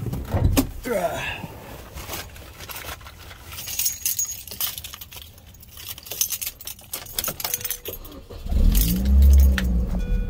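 Keys jangling with scattered clicks and rattles, then, about eight and a half seconds in, the 2006 Mini Cooper S's supercharged 1.6-litre four-cylinder engine starts with a brief rev flare and settles to a low, steady running note.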